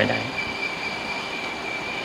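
Steady hiss of an old 1978 recording, with a thin, high, steady whine running through it; the last syllable of a man's speech ends just at the start.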